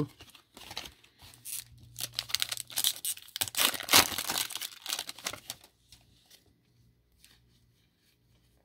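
Foil trading-card pack wrapper crinkling and tearing as the pack is opened, a dense crackle from about half a second in to nearly six seconds. After that, only faint ticks of the cards being handled.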